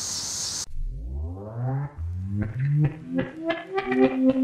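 Background music starting: a low swell of notes gliding upward, then separate picked notes building up. For the first half-second a high outdoor insect hiss is heard, which cuts off abruptly when the music begins.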